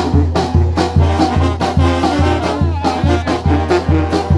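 A live brass band playing: sousaphone bass notes on a steady, even beat under trumpets and saxophone, with bass drum, cymbal and snare strikes.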